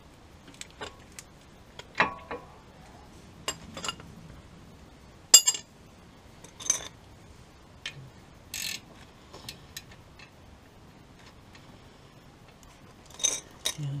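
Metal hand tools and a spanner clicking and clinking irregularly against the brake caliper hardware while its bolts are tightened, with a sharp metallic click about five seconds in.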